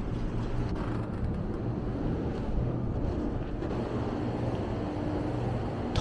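Steady low background rumble with a faint hum, the ambient noise of an indoor shopping centre.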